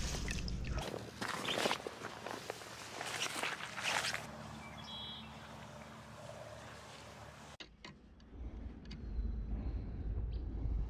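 Irregular rustling and steps through tall grass and brush, loudest in the first few seconds, with a brief high chirp about halfway through. Near the end a low rumble of wind or handling on a close microphone comes in.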